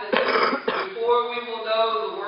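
A man clears his throat with a short rough burst right at the start, then carries on speaking.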